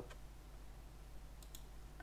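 A couple of faint computer mouse clicks about a second and a half in, over a low steady electrical hum and room tone.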